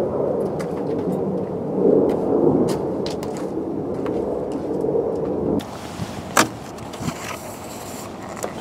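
Footsteps crunching on gravel over a loud, steady rumble, which cuts off suddenly about five and a half seconds in. A few sharp clicks and knocks follow.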